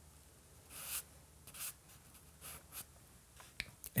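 Compressed charcoal stick scratching across drawing paper in several short, faint strokes as shading is laid in.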